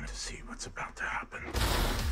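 Whispered voice from a trailer's soundtrack, then a sudden loud low boom about one and a half seconds in that carries on.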